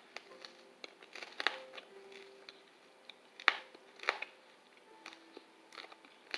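Faint mouth sounds of a chocolate-coated hard candy being eaten: scattered sharp clicks and small crunches, the strongest about a second and a half in and again around three and a half and four seconds in.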